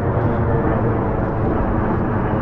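Steady low rumble of distant city traffic, with no single event standing out.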